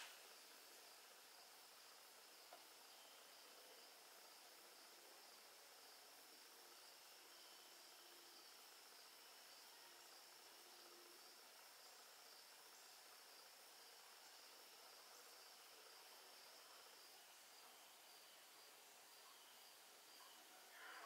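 Near silence: room tone, a faint steady hiss with a thin high whine that fades near the end.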